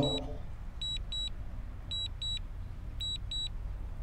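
DJI Mini 2 remote controller beeping during Return to Home: short high double beeps, about one pair a second, over a low steady hum.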